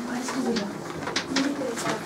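Chalk writing on a blackboard: a run of short, sharp taps and scratches as letters are written, several a second. A low voice sounds faintly underneath.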